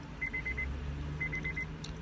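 A car's electronic warning chime beeping in quick groups of about four, repeating about once a second, over a low steady hum.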